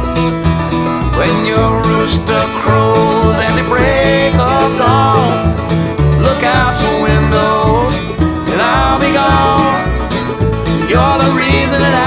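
Instrumental break of an acoustic country-folk song: strummed guitar over a steady bass line, with a lead melody of held, bending notes.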